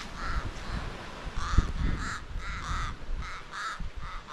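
Crows cawing: a run of about eight short calls, several coming two in quick succession.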